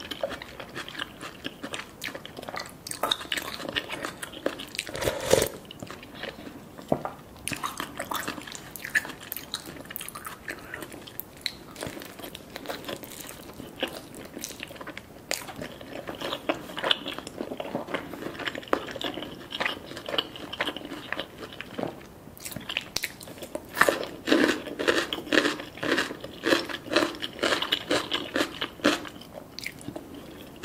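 A person eating close to the microphone: crisp bites and crunching into sauce-glazed Korean fried chicken, with chewing in between. The crunching comes in clusters and is densest near the end.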